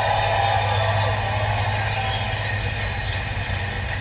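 Audience applauding and cheering: a steady wash of crowd noise with no speech over it.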